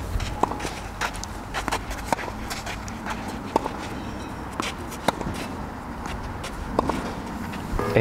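Outdoor ambience on a tennis court: a steady low rumble with scattered light knocks and clicks spread through it.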